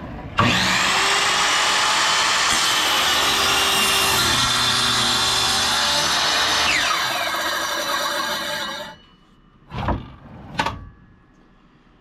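Ryobi sliding mitre saw starting up suddenly and running loud and steady while its blade cuts through a 1x8 pine board. About seven seconds in it falls in pitch as the blade spins down, dying out near nine seconds. Two short knocks follow about a second later.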